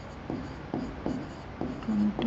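Writing on a green board: four or five short scratching strokes, about half a second apart, as numbers are written.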